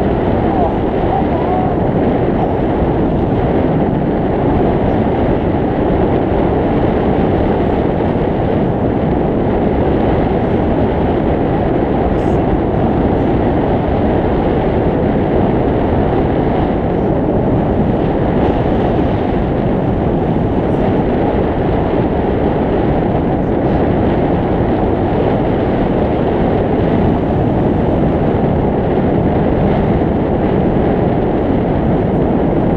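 Steady, loud rush of airflow on the microphone of a camera mounted on a hang glider's wing in flight, a dense low-pitched noise that hardly changes.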